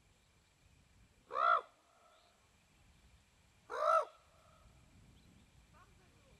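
Red-crowned crane giving two loud calls about two and a half seconds apart, each a short note that rises and falls in pitch.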